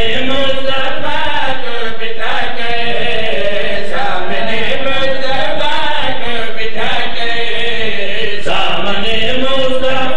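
Men chanting a drawn-out melodic lament into a microphone, very loud, in long gliding phrases that restart about every two seconds.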